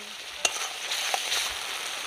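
Curry masala frying in a metal kadai: a steady sizzle, with a sharp knock of the spatula against the pan about half a second in and a fainter one just after a second.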